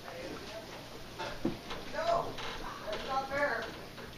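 Faint, indistinct voices in a small room, a few short murmurs, with no distinct non-speech sound standing out.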